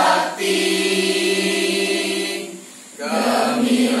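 A mixed choir of young men and women singing a hymn together in long held notes, with a short gap between phrases about two and a half seconds in before the next line begins.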